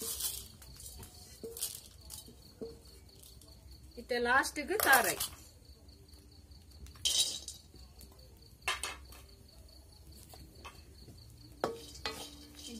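Metal clinks and knocks from an iron kadai being wiped out with a cloth and handled on a wood-fire hearth, a few sharp strikes spread apart. A brief voice about four seconds in is the loudest sound.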